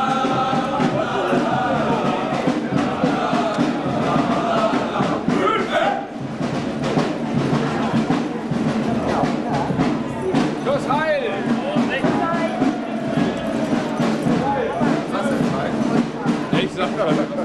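Parade band music with held notes, mixed with the voices and chatter of people along the street; the music is clearest in the first six seconds, after which the talking stands out more.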